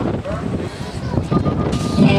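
Voices of spectators shouting at a BMX race start, with a steady electronic start-gate tone held for most of the last second as the gate drops and the riders roll off.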